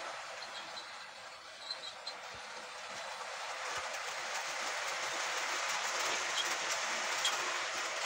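A model railway train running on its track: the small motor's whir and the wheels' clatter over the rails grow louder about halfway through as the locomotive and its coaches come by close up.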